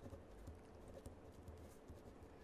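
Faint marker-pen strokes on paper: soft scratches and small irregular ticks as a word is handwritten.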